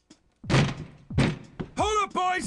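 Two heavy thuds about three quarters of a second apart, then a high, wavering voice-like call that starts near the end.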